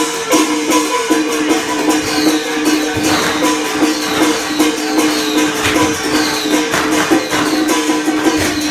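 Traditional temple procession music: a melody instrument plays held notes over regular gong and cymbal strikes, a little under two per second, each ringing on briefly.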